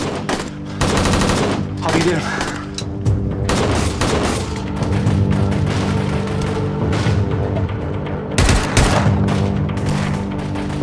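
Bursts of automatic gunfire over a dramatic orchestral score: a rapid burst about a second in, scattered shots after, and the loudest burst about eight and a half seconds in.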